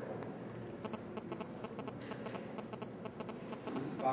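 Light, irregular clicking of typing on a MacBook laptop keyboard, a few keystrokes a second with brief pauses, faint over steady room hum.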